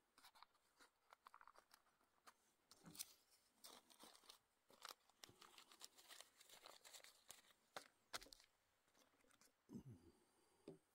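Faint crinkling and rustling of an emptied cocoa-mix packet and a nylon stuff sack being handled, with scattered small clicks and taps, and a soft knock near the end.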